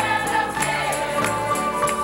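Church choir singing an upbeat gospel song in harmony over accompaniment, with a steady beat of sharp ticks several times a second.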